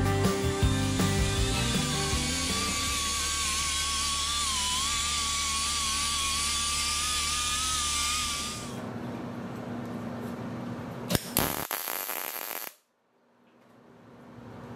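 A right-angle die grinder with a sanding disc running against steel tubing: a steady hiss with a high whine that wavers as the load changes, over background music. About nine seconds in the grinding stops; a click and a short burst of tool noise follow, then the sound cuts off abruptly and slowly fades back in.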